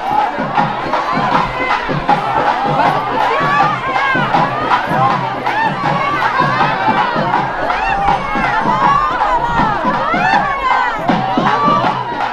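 A large crowd shouting and cheering, many voices overlapping without a break.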